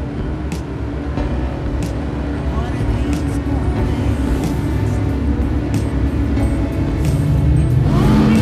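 Speedboat engine running at speed, a dense low rumble that builds slowly in loudness, with film music over it.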